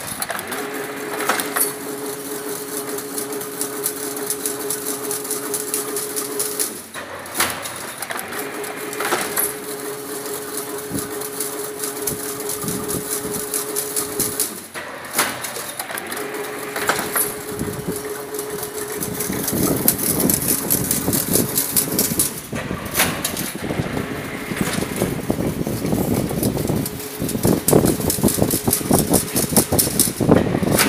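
Double-wire chain link fence making machine running as it weaves wire mesh: a steady hum that breaks off about every seven seconds as the machine cycles, with sharp metallic clanks recurring every few seconds. From about two-thirds of the way in the sound gets louder and rougher, a mechanical rattle.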